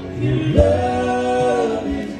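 Male voices singing a long held note in harmony, coming in about half a second in, over a live acoustic bluegrass band of fiddle, guitars, upright bass and banjo.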